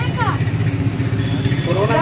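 A low engine hum runs steadily under the talk, with brief speech at the start and again near the end.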